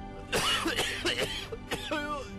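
A man's voice in short, strained bursts, tagged as coughing and throat clearing, over steady background music.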